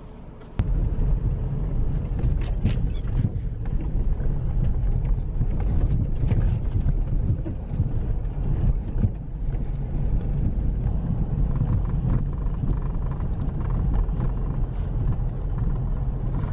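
Car driving along a snow-covered forest track, heard from inside the cabin: a steady low rumble of tyres and engine with scattered clicks, starting abruptly about half a second in.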